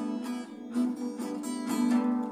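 Instrumental music led by acoustic guitar strummed in a steady, lively rhythm, with no singing.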